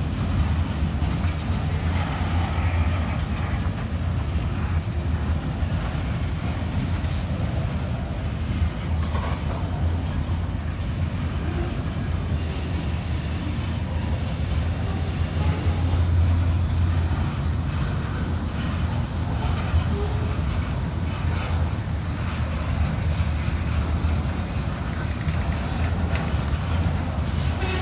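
Freight cars of a long train rolling past at close range: a steady, continuous low rumble of steel wheels on the rails.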